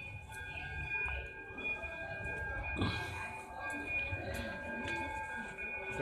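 Ambient background of faint steady held tones over a low rumble of camera handling and movement, with faint distant voices around the middle.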